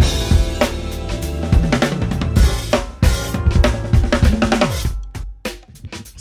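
Acoustic drum kit played hard, with snare, bass drum and cymbals, over a backing track. The drums drop out about five seconds in, leaving the backing track on its own.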